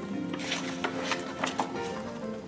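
Soft background music of held tones, with a few brief rustles and clicks from a paper picture-book page being turned.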